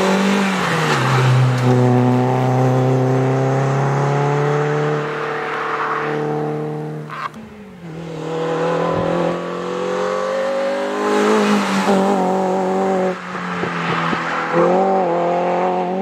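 Renault Clio RS's 2.0-litre four-cylinder engine running at high revs as the car is driven hard. The revs drop about a second in, hold steady, and after a short break around the middle rise and fall with quick dips near the end.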